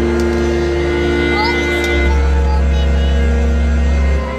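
Live band music: sustained synthesizer chords held steady, with a deep bass note coming in about halfway through and dropping out right at the end.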